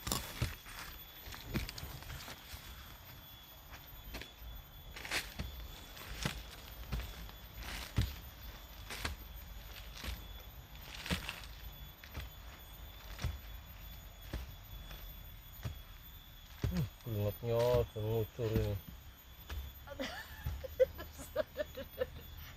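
A small hand digging tool scraping and chopping into damp garden soil, irregular strokes every second or two. A voice is heard briefly about three-quarters of the way through.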